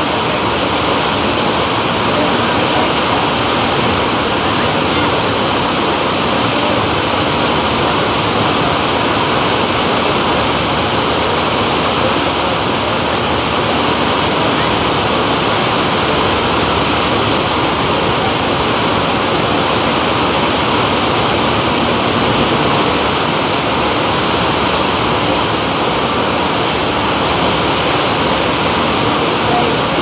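Loud, steady rush of water from a surf-simulator sheet wave: pumped water shooting in a thin, fast sheet up a sloped ride surface, unchanging throughout.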